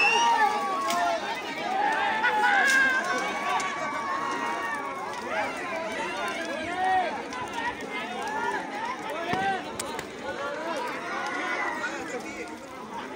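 A crowd of many people shouting and calling out at once, voices overlapping, with a few sharp cracks cutting through.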